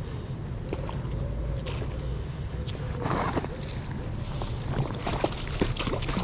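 Water splashing and sloshing as a hooked perch thrashes at the surface while it is drawn to the landing net, with sharper splashes near the end. A steady low rumble runs underneath.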